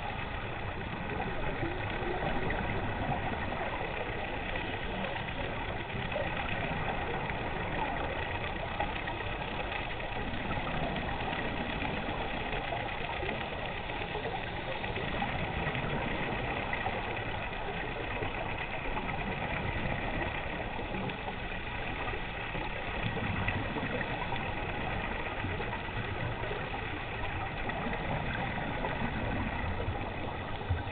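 Steady engine drone heard underwater through a camera housing, with faint constant whining tones above it: a boat motor running somewhere in the water.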